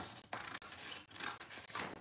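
Sheets of paper being handled, rustling and sliding against each other.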